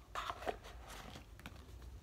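Small cardboard pedal box and its lid being handled: a short rustle, then a few faint clicks and taps.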